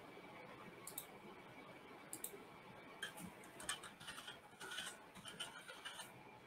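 Faint computer mouse and keyboard clicks: a couple of single clicks, then a quick run of key presses through the second half.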